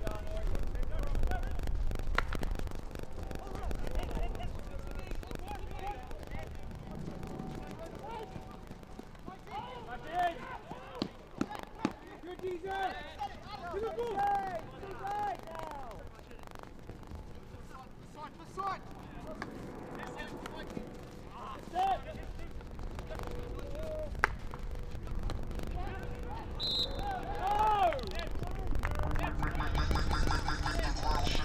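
Field hockey match in play: players shouting and calling to each other across the pitch, with several sharp cracks of hockey sticks striking the ball.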